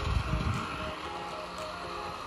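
Background music with short, evenly repeating melody notes, over a low rumble near the start.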